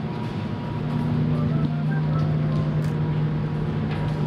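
A steady low droning hum that holds one pitch, with faint indistinct sounds over it.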